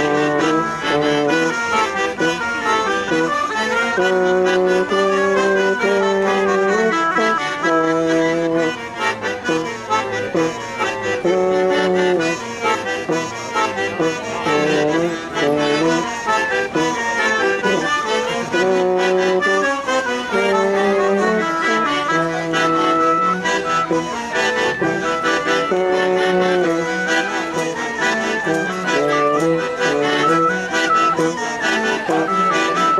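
A lively English folk dance tune for molly dancing, led by an accordion with a brass instrument playing alongside, at a steady beat.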